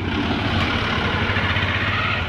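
A bus passing close by: its engine rumbles low, under a steady rush of tyre and road noise.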